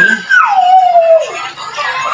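A single long whining cry that starts high and slides steadily down in pitch over about a second.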